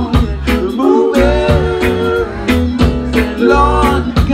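Live reggae band playing loudly: bass line, guitar and regular drum hits, with the vocal group singing a harmony line that holds one note for about a second partway through.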